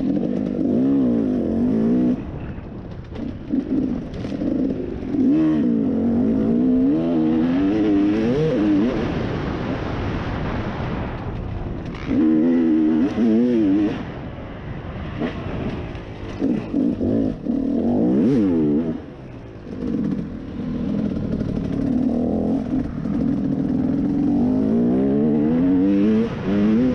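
KTM dirt bike engine revving up and down again and again as the rider works the throttle through the gears, with short drops in level where the throttle is closed, around two, ten and nineteen seconds in.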